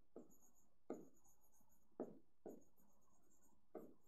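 Faint, irregular taps and scratches of a stylus writing on an interactive display board, about five short strokes.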